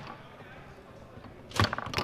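Low background hum for about a second and a half, then a sharp clack near the end as a pass is knocked down: the hard foosball strikes a rod-mounted player figure, followed by a few quick rod clicks.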